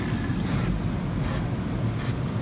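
Water jets of an automatic tunnel car wash spraying against the car's windows and body, heard from inside the cabin as a steady rushing hiss over a low rumble. The hiss is strongest in the first moment, then eases a little.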